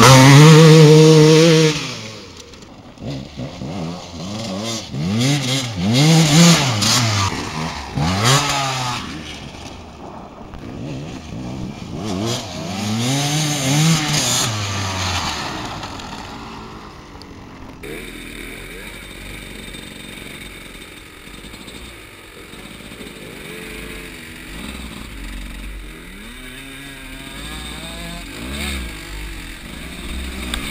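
A GasGas 300 EC enduro bike's two-stroke single-cylinder engine is blipped and revved up and down again and again through the first half. After a sudden change about 18 s in, the engine runs quieter and steadier.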